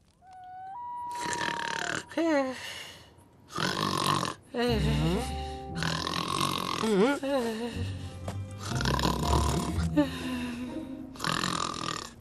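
Cartoon background music, with a sleeping cat snoring in comic vocal glides over it several times.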